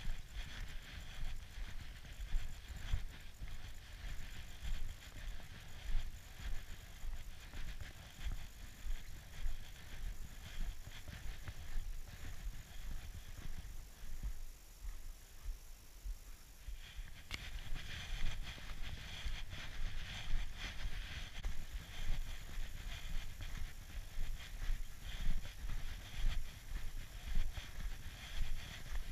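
Footsteps crunching in snow at a steady walking pace, with a brief lull about halfway through.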